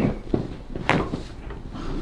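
A single sharp crack about a second in, as a chiropractor's hands thrust down on the back of a patient lying face down: a spinal joint popping under the adjustment.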